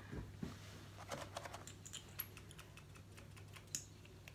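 Faint, irregular small clicks and taps of makeup brushes being picked up off a table and dabbed into a small pot, with one slightly sharper click near the end.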